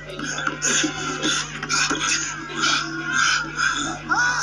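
Cartoon soundtrack played through a television's speaker: background music and voices, with a quick run of short hissy bursts two to three times a second over a steady low hum.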